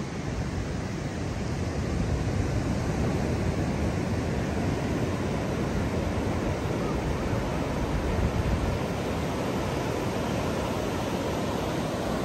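Steady rush of ocean surf breaking and washing up a sandy beach, getting a little louder after the first second or so.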